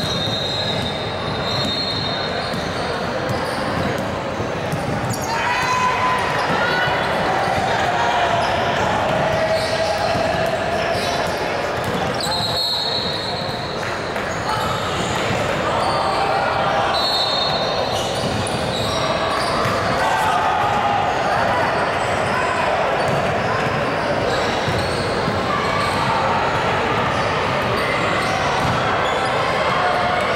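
Basketball being played in a large gymnasium: indistinct voices of players and spectators echoing in the hall, with a ball bouncing on the hardwood floor.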